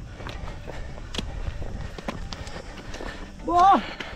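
Irregular footsteps and trekking-pole taps on a dry dirt trail, then a short voiced exclamation, 'Oh', near the end.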